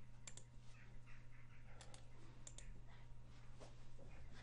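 A handful of faint, scattered clicks from a computer keyboard, over a low steady hum.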